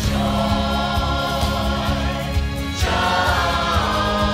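Church choir singing a Christmas song with instrumental accompaniment, moving to a new phrase about three seconds in.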